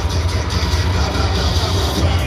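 Loud cheerleading routine music with a heavy pulsing bass, played over a PA system in a large hall.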